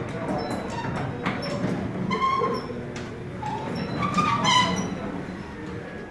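Chamberlain B4613T belt-drive DC garage door opener closing a sectional door, running very quiet with a steady low hum. A few short high-pitched whines come through about two seconds in and again around four and a half seconds.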